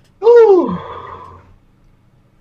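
A person's short, loud, wordless vocal sound whose pitch slides steeply down, trailing off into breathy noise over about a second.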